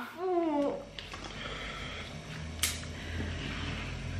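A person's short voiced sound with a gliding pitch, lasting under a second, then a quiet room with a low steady hum and two brief clicks, the sharper one near the middle.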